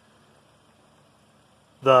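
Faint, steady running noise from an idling 2009 Toyota Yaris and the box fan blowing on its radiator, with no distinct knocks or changes. A man starts speaking near the end.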